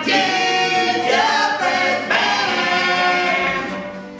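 Several voices singing together unaccompanied, in two long held phrases, trailing off near the end.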